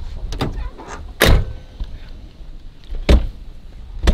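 Heavy doors of a 1979 Pontiac Bonneville shutting as people get in: two loud thuds, about a second in and about three seconds in, with rustling and movement between them.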